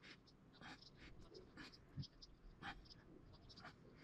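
Faint, irregular scratching of a small hand-held sculpting tool scraping and shaping oil-based modelling clay, a few short strokes a second.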